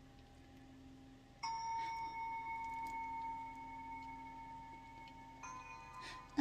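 A bell-like chime struck twice, about four seconds apart. Each strike rings on as a cluster of clear, steady tones that fade slowly.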